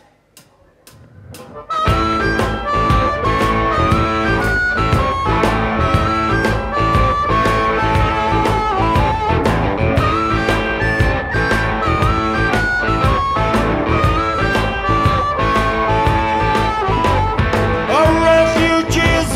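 Live rock band with drums and electric guitars: a few sharp clicks, then the full band comes in together about two seconds in and plays on with a steady beat and a lead melody line on top.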